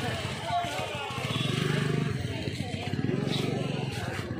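People's voices talking over a motor vehicle engine running, a busy street-market mix.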